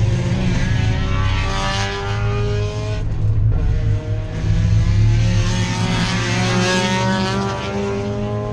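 Race car engine noise heard from inside a race car's cabin: a loud low drone with an engine pitch that climbs, breaks off briefly about three seconds in, and climbs again.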